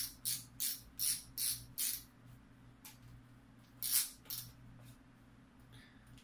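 Threaded reel-seat nut of a casting rod being unscrewed by hand to free a baitcasting reel: a series of short scraping rasps, about three a second, six in the first two seconds and a few more around four seconds in. A low steady hum runs underneath.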